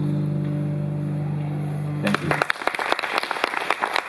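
The last chord of an acoustic guitar song held and ringing out. Just after two seconds in it stops and audience applause begins.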